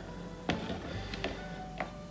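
Quiet background music with a few light clicks: the tortoise's shell and claws knocking against the plastic tub, once about half a second in, twice in quick succession mid-way and once near the end.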